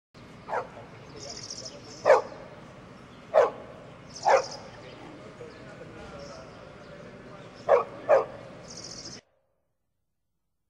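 A dog barking six times in single, sharp barks spaced a second or more apart, the last two in quick succession. The sound cuts off suddenly near the end.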